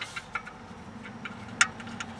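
A few light metallic clicks and one sharper click about one and a half seconds in, from a hand fitting the small fixing screws inside a metal under-seat console safe.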